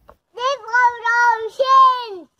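A small girl's high voice loudly calling out "Forgive us our sins!" in three long, drawn-out, sing-song pieces.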